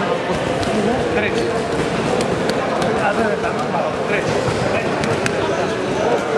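Many voices talking at once in an echoing sports hall, with a handful of sharp smacks of boxing gloves striking pads, several grouped between about two and three seconds in and one a little after five seconds.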